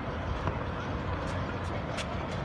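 Outdoor city traffic noise: a steady low rumble of vehicles on a nearby road, with a few faint clicks.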